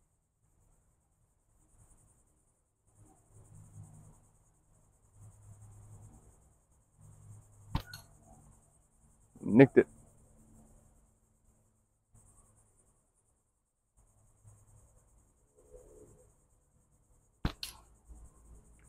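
Slingshot shooting: near the end, a sharp snap of the released bands, followed a split second later by the crack of the steel ball striking the hanging target. Another single sharp click comes about halfway through. Insects chirr faintly and steadily in the background.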